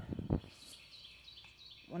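A small bird singing faintly in the background: a short run of thin, high notes that step in pitch. It follows a couple of brief handling knocks near the start.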